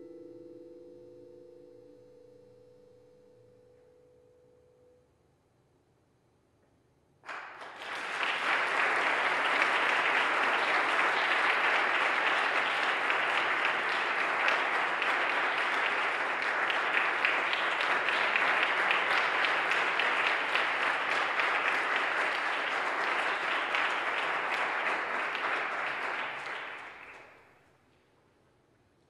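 The last chord of a vibraphone and marimba duet rings and fades away over the first few seconds. After a short silence, audience applause starts about seven seconds in and continues steadily for about twenty seconds before dying away near the end.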